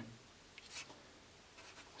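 A Sharpie felt-tip marker writing on paper: two faint, short strokes, one about half a second in and the other near the end.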